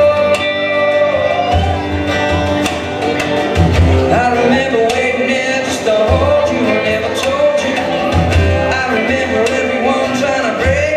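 Live band performing a song: a singer's voice over electric and acoustic guitars.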